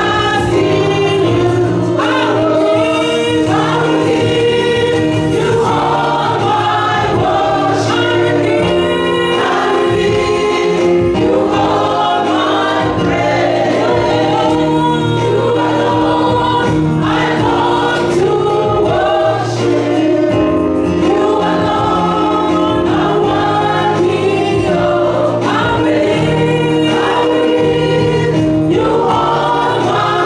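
Live gospel worship song: a lead singer and backing vocalists singing over a Yamaha electronic keyboard holding sustained chords.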